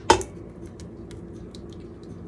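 A metal spoon clinks once sharply against a ceramic bowl as it scrapes a thick salsa-and-yogurt mixture out into a pot. A few faint light ticks follow.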